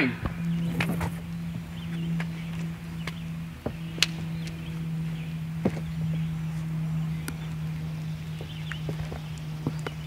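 Sneakered footsteps and scuffs on a wooden deck during a solo empty-hand martial-arts drill, with scattered sharp knocks and slaps, over a steady low hum.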